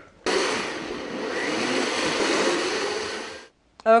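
Countertop blender running on a jar of eggless crepe batter (water, tofu, flour), starting abruptly, running steadily for about three seconds, then winding down and stopping.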